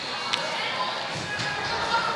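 Distant, echoing voices of players and onlookers in a large indoor soccer hall, with one sharp thump of the soccer ball being struck about a third of a second in.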